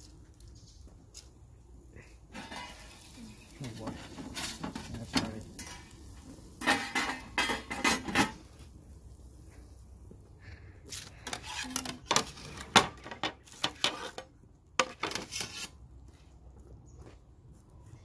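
Metal pizza peel and plates clattering: scattered scrapes, clanks and knocks, with a denser stretch of scraping a few seconds in and a run of sharp knocks in the second half, the loudest about two-thirds of the way through.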